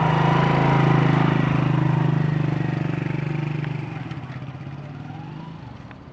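Small motorcycle engine running steadily with a fast regular pulse, fading away over the second half.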